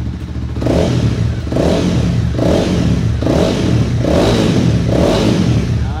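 Honda CB300R's single-cylinder engine running through an aftermarket exhaust, the throttle blipped six times in a row, about one rev a second over a steady idle.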